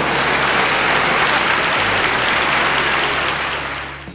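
Audience applauding, a dense, steady clatter of clapping that fades away near the end.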